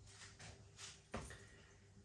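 Near silence: room tone, with a couple of faint soft noises about a second in.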